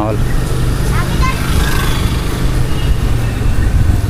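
Steady low rumble of street traffic and vehicle noise while moving along a road, with faint distant voices about a second in.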